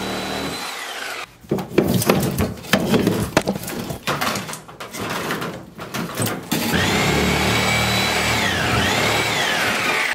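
Electric power saw cutting out a hot tub's plumbing and spray-foam insulation. The motor whines steadily and winds down about a second in. A few seconds of irregular crackling and knocking follow, and then the saw runs loud again, its pitch dipping and recovering as it bites near the end.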